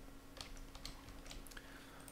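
Faint computer keyboard keystrokes and clicks, irregularly spaced, over a faint steady hum.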